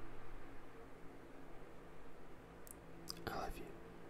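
Soft male whispering close to the microphone, mostly faint, with one short breathy whisper a little past three seconds in.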